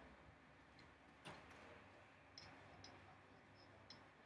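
Near silence with a few faint, short clicks and taps of a pen stylus on an interactive whiteboard as a tool is picked and a word is written, one a little louder at about a second in and a scatter near the end.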